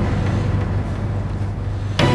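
A steady low hum with a soft, even hiss beneath it.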